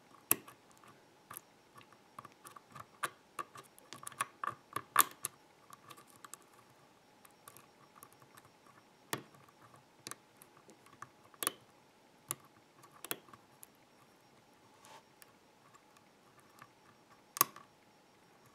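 Irregular small metallic clicks and ticks of a thin hook pick working the pins of a DOM pin-tumbler euro cylinder under light tension, some louder taps among them.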